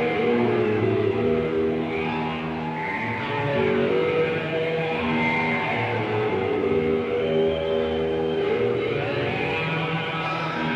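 Heavy metal band playing live: a slow opening of long, held electric guitar chords that change every second or so.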